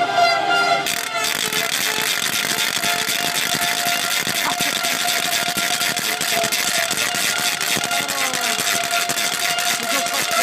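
A horn holding one long steady note. From about a second in, a loud rushing crowd noise of celebrating fans covers most of it.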